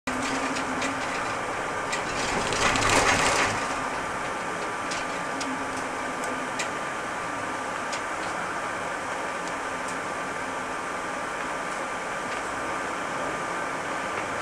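Ride noise inside a shuttle bus: steady engine and road noise with a faint steady whine and scattered light rattles and clicks. About three seconds in, a louder rushing burst lasts about a second.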